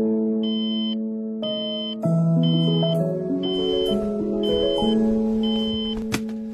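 Soft background music of sustained keyboard-like chords, over a digital alarm clock beeping six times, about once a second, each beep about half a second long.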